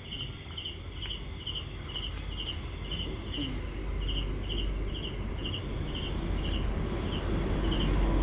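A cricket chirping steadily outdoors, short high chirps about twice a second, over a low rumble that grows louder toward the end.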